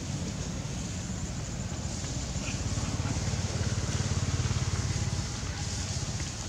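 A motor vehicle's engine running, a low pulsing rumble that grows louder about three seconds in and eases off near the end, as if passing by.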